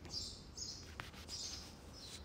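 Faint small birds chirping, several short high calls in a row, with a single sharp click about a second in.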